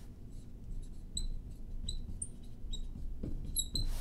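Marker writing on a glass lightboard: a run of short, high squeaks with soft strokes between them, starting about a second in.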